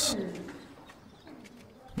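Quiet outdoor background with a bird cooing faintly.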